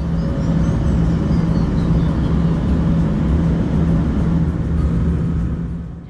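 Cabin noise of a Fokker 70 jet airliner in descent, heard from inside the cabin: a steady rumble of engines and airflow with a constant low hum. A faint high whine falls in pitch over the first couple of seconds.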